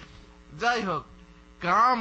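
Steady electrical mains hum runs under two short phrases of a man's voice, about half a second in and again near the end.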